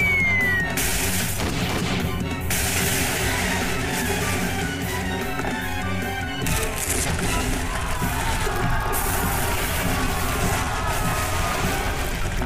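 Cartoon action score laid under sound effects: a short falling whistle right at the start, then long bursts of crashing noise, the first about a second in and another from about six to nine seconds.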